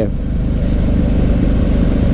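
Ducati Hypermotard's V-twin engine running at a steady speed while the bike cruises along, with wind rushing over the helmet microphone.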